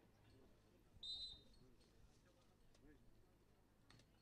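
Referee's whistle blown once, briefly, about a second in, authorising the serve; otherwise near silence, with a faint knock near the end.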